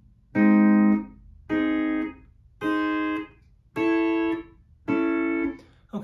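Pedal steel guitar playing a major chord five times, about one a second, the steel bar shifted one fret between chords. Each chord is cut off cleanly by pick blocking before the bar slides, so no slide is heard between them.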